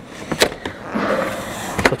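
Plastic seat-belt pillar trim panel being pried off its retaining clips: a sharp click about half a second in, then plastic rubbing and scraping, and another click near the end as the panel comes free.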